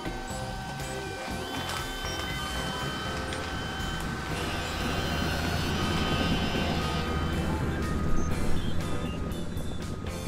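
Cartoon forklift truck's engine sound effect as it drives along carrying a load, a low rumbling hum that grows louder in the middle and fades again, over light background music.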